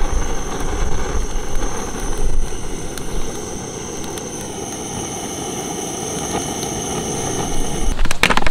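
Gas torch flame blowing steadily onto charcoal briquettes in a kettle grill to light them, louder in the first few seconds and then steady and somewhat quieter.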